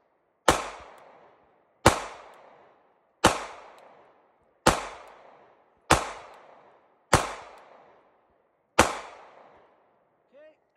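Seven shots from a 9mm Sig Sauer P365XL pistol fired at a slow, steady pace, roughly one every second and a half. Each sharp report fades away over about a second.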